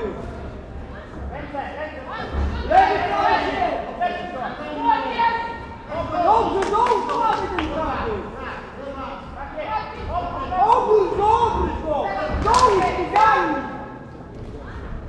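Voices shouting at an amateur boxing bout, coaches' and spectators' calls with no clear words, broken by a few sharp thuds of punches and footwork on the ring canvas, the loudest a little before the end.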